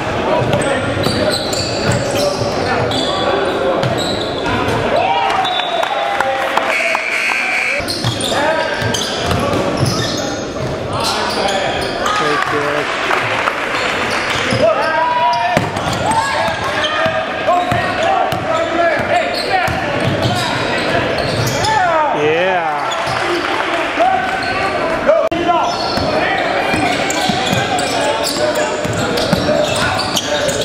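Basketball game sounds in an echoing gym: a ball bouncing on the hardwood floor, sneakers squeaking, and many indistinct voices of players and spectators calling out.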